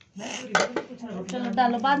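A few sharp clinks of dishes and cutlery against crockery, followed by a voice speaking.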